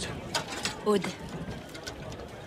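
A few sharp clicks spread over two seconds, with a brief falling vocal sound about a second in.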